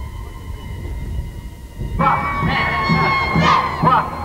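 A low background hiss with a faint steady hum, then, at an abrupt cut about two seconds in, a group of voices chanting and shouting in rhythm over a steady beat.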